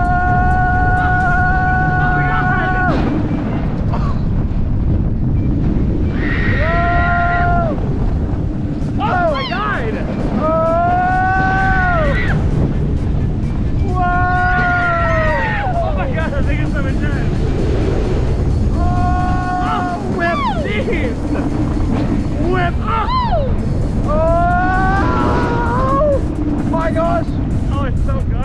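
Riders on a floorless roller coaster screaming again and again in long, high, held screams, about seven in all. Under them runs a steady rush of wind and track noise.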